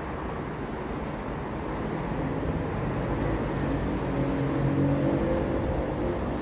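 A steady low mechanical rumble with a hum, like an engine running nearby, growing somewhat louder about halfway through.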